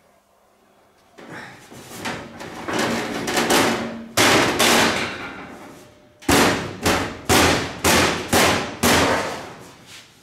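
Knocking on sheet-metal bodywork. A rising rushing noise leads to one sharp knock about four seconds in, then six sharp knocks about two a second, each ringing briefly.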